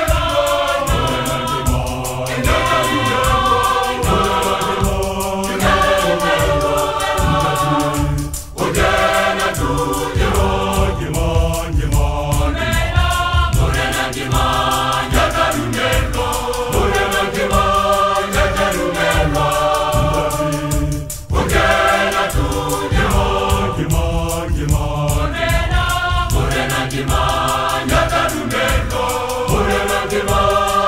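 A large choir singing a gospel song together, with two brief breaks between phrases, about eight and twenty-one seconds in.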